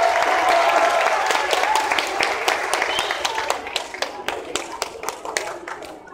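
Audience applauding with voices mixed in, after a performance ends; the clapping is strongest at first, then thins out and fades.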